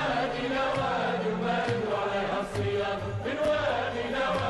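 A group of men singing a chant-like folk song together, with beats of a large double-headed tabl drum struck with a stick.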